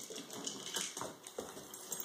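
A dog's claws and paws clicking on a laminate wood floor as it noses and paws a plastic ball around, with irregular light knocks from the ball.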